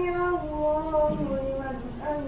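An imam's single male voice chanting the call to rise from bowing in congregational prayer, "sami'a Allahu liman hamidah", in a long, slowly falling melodic line.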